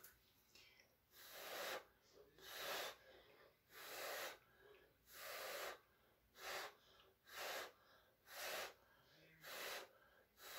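Short puffs of breath blown by mouth onto wet acrylic paint, about eight in a row roughly a second apart, each a brief breathy rush: blowing out a bloom so the paint spreads open and the white underneath shows through.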